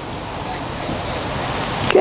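Wind gusting through trees, a hiss that builds steadily louder, with one short high bird chirp about half a second in.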